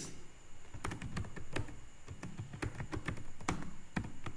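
Typing on a computer keyboard: a quick, irregular run of key clicks as a short phrase is typed.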